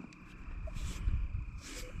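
Uneven low rumble of wind buffeting the microphone, with two brief rustles about a second in and near the end, over a faint steady high-pitched whine.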